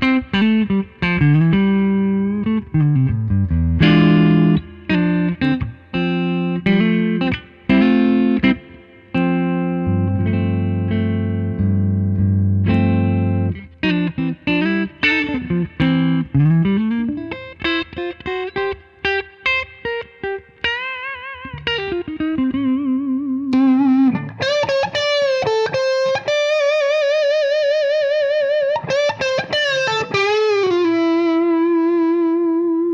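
Gibson Custom Shop Standard Historic 1959 Les Paul electric guitar played through an amplifier: quick picked runs with string bends, a low chord held for a few seconds near the middle, then long sustained high notes with wide vibrato over the last third.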